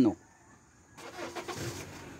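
A vehicle passing, its engine and tyre noise coming up about a second in and growing louder.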